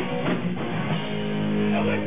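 Live rock band playing loud in a club, electric guitar strumming; from about halfway a chord is held and left ringing.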